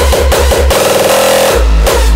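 Raw hardstyle track: a heavy, distorted kick drum pounding in a steady beat. About two-thirds of a second in, the kick drops out for under a second under a quick, tightening fill, then comes back hard.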